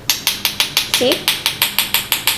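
Metal spoon scraping and clicking rapidly against a perforated stainless steel skimmer, about ten clicks a second, as it pushes chickpea-flour batter through the holes to make boondi drops. The batter drops through freely, which marks the right consistency for boondi.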